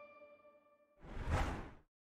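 The last tones of an outro jingle fade away, then about a second in a short whoosh sound effect swells up and stops just before the end.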